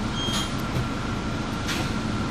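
Interior of a city bus on the move: steady engine and running-gear rumble, with two short hisses, about half a second in and near the end.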